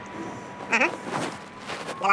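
A man's short drawn-out vocal sound about a second in, over a faint steady high-pitched whine.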